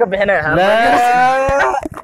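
A man's long, drawn-out call, one held vowel lasting about a second and a half after a few quick words.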